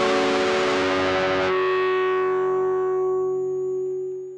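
Distorted electric guitar through effects: a noisy, dense wash for the first second and a half, then a sustained chord ringing out and starting to fade near the end, as the live house track closes.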